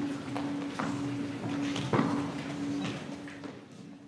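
Footsteps of shoes on a wooden stage, a steady walking pace of about two to three steps a second, growing fainter toward the end.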